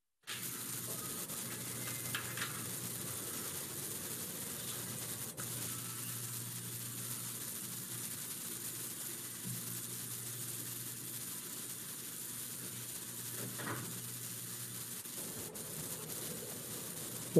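Steady hiss of an open microphone line on a video call, with a faint low hum underneath and a couple of faint clicks. It cuts in abruptly at the very start after a moment of total silence.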